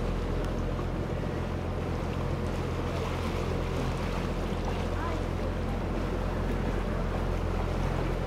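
Canal tour boat's motor running steadily with a low even hum, and water washing along the hull as the boat moves.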